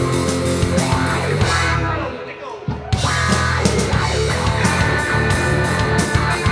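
Live rock band playing an instrumental passage on electric guitars and drum kit. About two seconds in the band drops away to a brief quieter break, then comes back in full just before the three-second mark.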